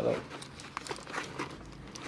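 Faint crinkling of the clear plastic wrap on a new handbag's handles as the bag is handled.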